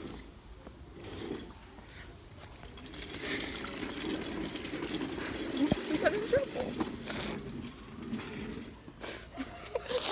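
Faint, muffled voices over low, steady background noise.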